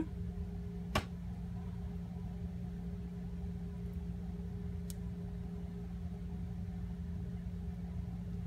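Steady low hum of room background noise, like a fan or appliance running, with one sharp click about a second in.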